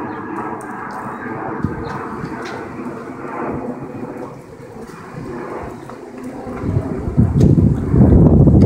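Thunder rumbling. Heavier low thumps come in near the end.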